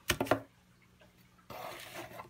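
Packaging handled while a small plastic part is unpacked: a soft, even rustling scrape for about half a second near the end.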